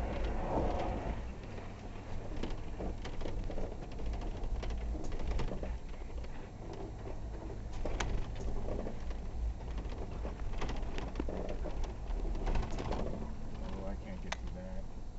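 Off-road vehicle engine droning low and steady while crawling over rough ground, with scattered knocks and rattles as the vehicle bounces.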